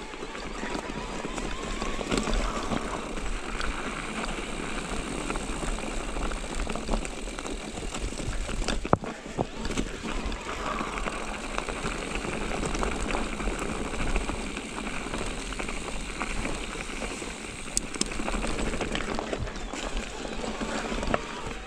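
Mountain bike rolling over a loose rocky, leaf-strewn dirt trail: steady tyre and trail noise with the bike's frame and parts rattling in many small clicks, and a sharp knock about nine seconds in.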